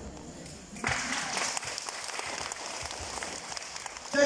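Audience applauding, the clapping starting about a second in after a pause in a microphone speech.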